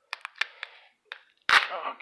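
Clicks and crinkles of a rigid plastic top loader being handled and its tape seal picked at, then one sharp knock about one and a half seconds in.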